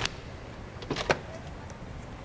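Metal push bar on a glass entrance door clacking as it is pushed and the latch releases: a sharp click at the start and a quick cluster of clacks about a second in, as the door swings open.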